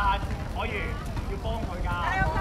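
Girls' voices calling out across the court in short, high-pitched shouts, over a steady low rumble.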